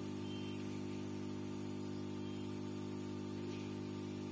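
Quick 850A SMD rework station's hot-air handpiece blowing at its lowest airflow setting: a steady hum with a constant rush of air from the nozzle. The airflow is still far too strong at setting 1, the fault being shown.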